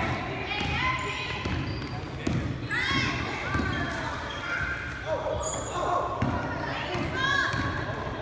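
Basketball being dribbled and bouncing on a hardwood gym floor, with sneakers squeaking in short high chirps and indistinct voices of players and spectators. The sounds echo in a large gymnasium.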